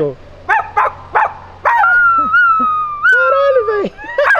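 A young woman imitating a dog with her voice: three short yaps, then one long wavering whine that falls away at the end.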